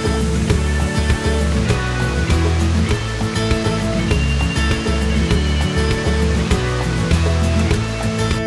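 Instrumental background music with a steady beat and held notes.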